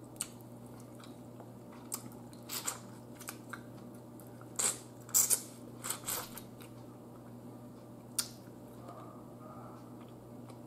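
Mouth sounds of eating a cooked turkey neck by hand: short wet smacks, bites and sucking of meat off the bone. They come as about ten scattered sharp clicks with chewing between them.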